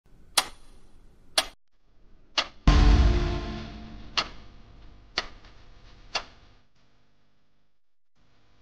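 Edited intro sound effects: a sharp tick about once a second, like a clock, broken about three seconds in by a loud deep boom with a ringing chord that fades over the next couple of seconds.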